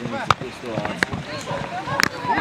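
Many overlapping voices of young players and adults shouting and calling out at once on a football pitch. Two sharp knocks cut through, about a third of a second and about a second in.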